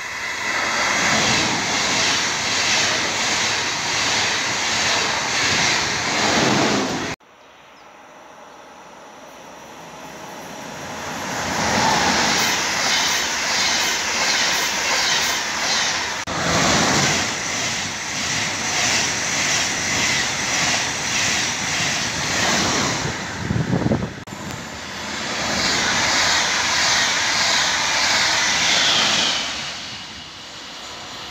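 Passenger trains passing at speed close by, one clip after another with abrupt cuts between them. ICE high-speed trains rush past, then a double-deck Intercity 2, each with a fast, regular beat of wheels running over the track.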